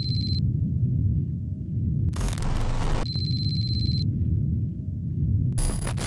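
Electronic intro sting: a steady low rumble under short glitchy static bursts about two seconds in and near the end, with a high electronic tone at the very start and again about three seconds in.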